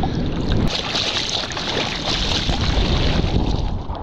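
A surfer's arms paddling a surfboard through the ocean, with water splashing and rushing over and past the board. The splashing grows louder about a second in and eases near the end.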